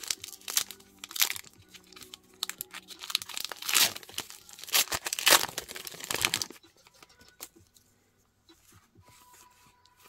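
A Pokémon TCG booster pack's foil wrapper being torn open and crinkled, in a run of rustling bursts that stops about six and a half seconds in, leaving only faint clicks.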